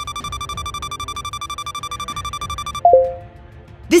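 Quiz-game countdown timer running out: a rapid pulsing electronic ring like an alarm clock over soft background music, stopping nearly three seconds in with a short, loud time-up sound that drops in pitch.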